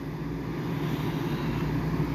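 A steady low rumble with a faint hum underneath, slowly growing louder.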